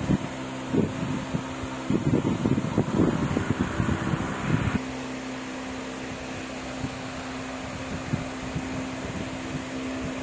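Plastic-wrapped stainless steel mixer-grinder jars handled and set down on a concrete floor: irregular knocks and plastic rustling for about the first five seconds. After that the handling stops and only a steady low hum remains.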